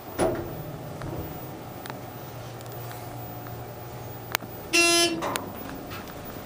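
ThyssenKrupp elevator cab in motion: a knock as it sets off, then a steady low hum of the ride for a few seconds, a click, and a short buzzy beep about five seconds in as the car signals arrival at the floor.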